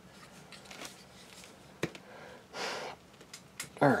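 Plastic model-kit parts being squeezed together by hand, with one sharp click a little under two seconds in as a part seats, then a short breath through the nose.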